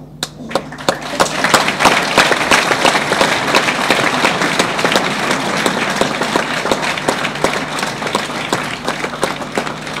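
Audience applauding: a few scattered claps at first, then the clapping spreads and swells within about a second and a half, holds for several seconds and thins out near the end.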